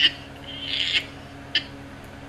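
Stifled laughter: a few short breathy puffs, with a longer one swelling about half a second in and a last short puff about a second and a half in.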